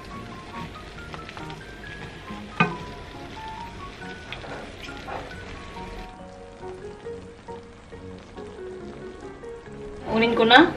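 Light, cheerful background music over the sizzle of a honey-soy glaze bubbling in a frying pan around pork belly, with one sharp tap about two and a half seconds in.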